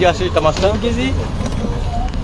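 Voices talking for about the first second, over a steady low rumble.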